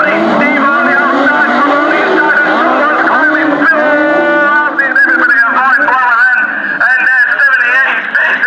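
Several autograss race cars' engines revving and changing pitch as the pack races along a dirt track, the notes overlapping. A commentator's voice carries on over the engines, most clearly in the second half.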